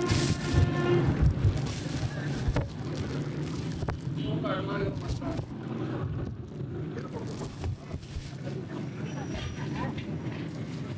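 Street-stall background: a steady low hum with brief speech at the start and again faintly around the middle, and scattered small clicks and rustles of fruit and a plastic bag being handled on a scale.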